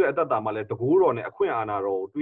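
Speech only: a voice talking steadily, with no other sound.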